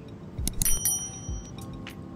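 Someone biting into and chewing a sandwich, with a few soft mouth clicks and crunches. A brief high, bell-like ding rings out about half a second in and fades within a second.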